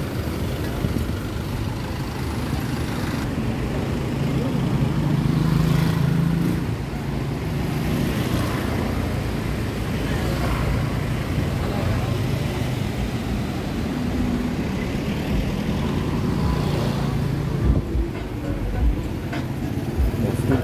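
Busy road traffic: minibuses, vans, cars and motorbikes passing close by, a continuous engine hum that swells as vehicles go past, louder about five seconds in and again in the last few seconds.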